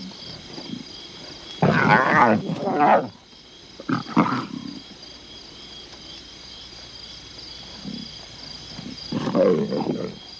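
Young lions snarling and growling in three rough bouts, the first about a second and a half in, a short one around four seconds, and another near the end. An injured cub on the ground is snarling back as a bigger cub bullies it. Insects trill steadily behind.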